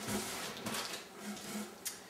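Packing paper rustling and cardboard being handled as a paper-wrapped piece of pottery is set into a cardboard carton, with one sharp tap near the end.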